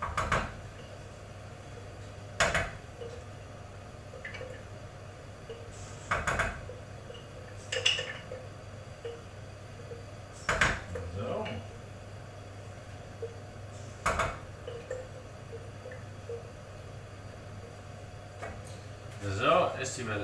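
Glass jar and utensil clinking and knocking against a frying pan as the last of a jar of sauce is scraped and tapped out, one sharp knock every few seconds and a quicker run of clinks near the end, over a steady low hum.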